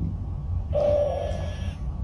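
A dog's single whining cry, held at one pitch for about a second.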